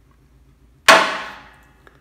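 Permanent-magnet rotor of a Danaher Motion brushless servo motor snapping onto a steel shelving upright, pulled by its strong magnets: one sharp metallic clang about a second in, ringing away over about a second.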